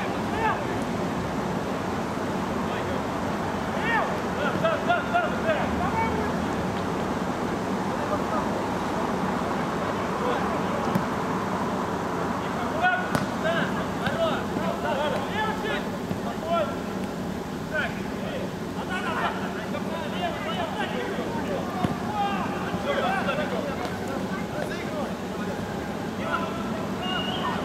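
Players and spectators shouting and calling out during a mini-football match, scattered short shouts over a steady background noise, with a sharp knock about 13 seconds in.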